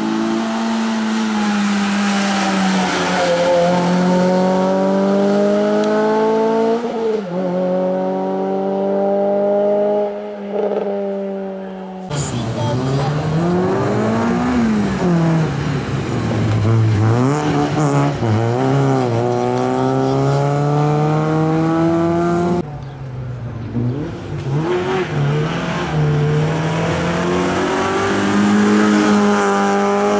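Group A hillclimb racing hatchbacks (a Renault Clio, then a Citroën Saxo, then another) run hard one after another. Each engine's revs climb steeply and drop sharply at each upshift. In the middle stretch the revs swing up and down rapidly as the car brakes and accelerates through bends.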